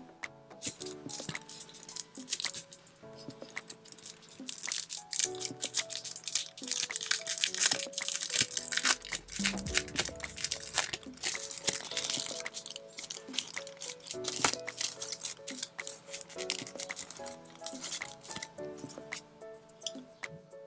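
Clear plastic sleeve and paper card packaging crinkling and rustling as a card is unwrapped by hand, in quick crackles that are busiest in the middle. Soft instrumental background music plays under it.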